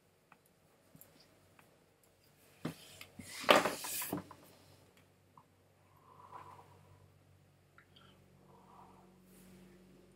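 Puffing on a cigar while lighting it: faint lip-smacking clicks as he draws, then a loud rush of breath about three seconds in as smoke is blown out, and softer exhales later.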